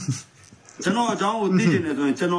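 A man speaking with lively rising and falling intonation, after a brief pause near the start.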